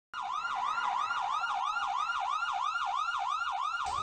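A fast yelp-style siren sound effect, its pitch sweeping up and down about four times a second. It starts abruptly and keeps going without a break.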